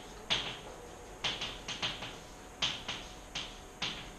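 Chalk tapping and scratching on a blackboard while writing: a string of sharp, irregular clicks, about nine in four seconds, each with a short scrape.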